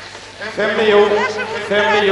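A person's voice speaking, starting about half a second in after a quieter moment, with some drawn-out, steady-pitched sounds among the words. No words were written down, so this may be speech the English recogniser did not pick up.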